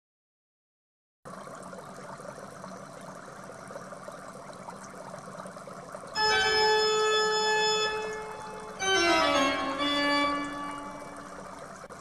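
Organ-style intro music: a faint hiss starts about a second in, then a held organ chord sounds for about two seconds, followed by a second chord that slides down in pitch and holds, fading out near the end.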